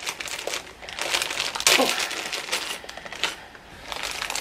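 Thin plastic resealable bag crinkling in short, irregular crackles as it is opened and handled.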